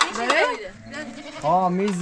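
Bleating livestock: several wavering bleats, with a longer held bleat near the end, and people's voices mixed in.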